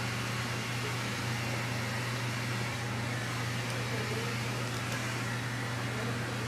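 A steady low machine hum with an even hiss, unchanging throughout.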